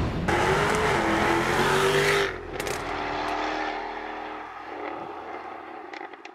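Jaguar F-Type Coupé engine running hard on a race track, a steady high engine note that drops suddenly a little over two seconds in. A quieter engine note follows with a few sharp cracks and fades away.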